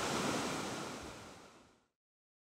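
A steady outdoor rushing noise, with no clear pitch or rhythm, that fades out to silence within about a second and a half.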